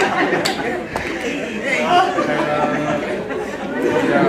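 Speech only: several voices talking at once.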